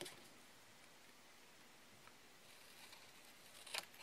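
Near silence, then a couple of faint sharp snips near the end: small craft scissors cutting a corner off a cardstock tag.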